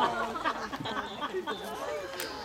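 Several people talking at once in the background, chatter with no clear words.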